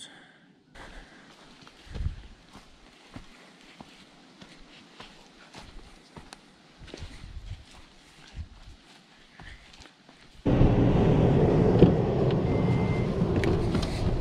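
Footsteps on a dirt and grass bank, soft scattered steps and taps. About ten seconds in, this gives way suddenly to a loud steady noise inside a vehicle with its door open, with a short high beep partway through.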